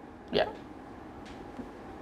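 Speech only: a man says a single brief "ya" about half a second in, then quiet room tone.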